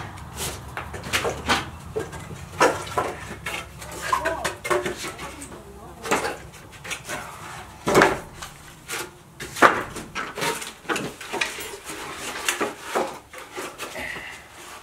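Old wooden boards knocking and clattering against each other as they are picked up and handled, in irregular sharp knocks with a few louder ones partway through.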